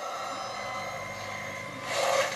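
A steady drone from the promo's soundtrack underscore, with a few faint held tones, played through a television speaker.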